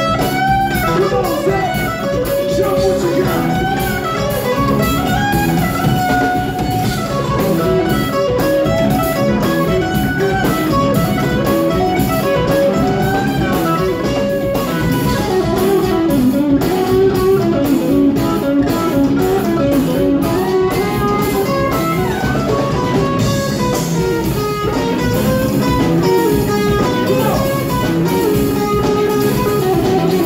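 Live rock band playing an instrumental passage: electric guitars over bass and a drum kit, with no vocals.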